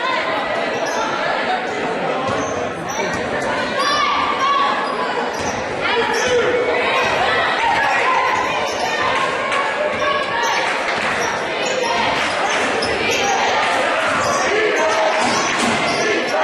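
Basketball bouncing on a hardwood gym floor over steady crowd and player voices, echoing in a large hall.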